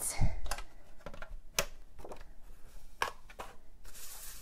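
Handling of a sheet of cardstock and a plastic scoring board: a soft thump near the start, then irregular light clicks and taps as the paper is moved and set down on the board.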